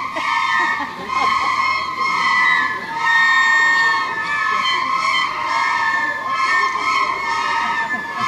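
A group of children playing recorders together, a high melody of held notes about a second long with short breaks between phrases, the many instruments slightly out of tune with one another. Murmur from the watching crowd underneath.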